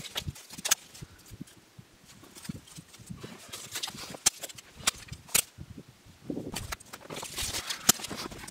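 Dry split kindling sticks clacking and knocking against each other as they are stacked onto a fire lay, a string of sharp irregular clicks with some rustling scrape of wood in between.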